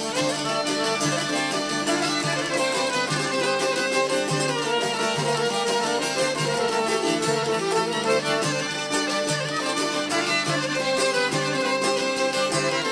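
Albanian folk ensemble playing an instrumental passage: violin, accordion and long-necked plucked lutes over the steady beat of a frame drum.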